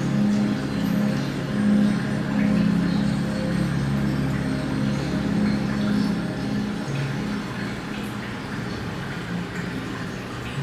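Aquarium hall background music of slow, low sustained notes that shift in pitch, over a low rumble.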